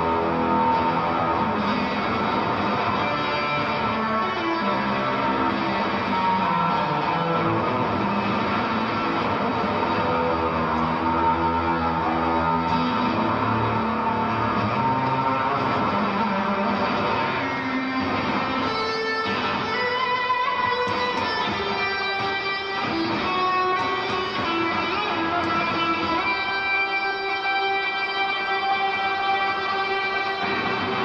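Live music led by electric guitar, heard through an audience recording in an arena. About 18 seconds in it thins out into sparser, long held ringing tones.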